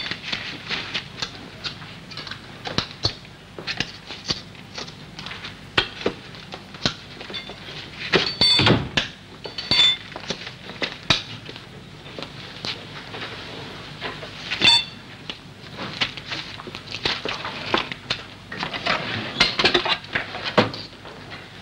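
Irregular clinks, taps and knocks of metal and crockery being handled, a few with a brief ringing tone. The loudest clatter comes about eight seconds in.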